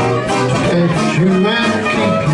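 Live traditional jazz band playing an instrumental passage: trombone and clarinet over string bass, guitar, piano and drums.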